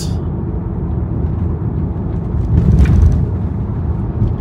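Steady road and engine rumble heard inside a moving car's cabin, swelling briefly a little past halfway.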